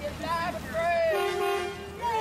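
Voices with wavering, drawn-out pitch, then a short, steady horn toot of under a second starting about halfway through.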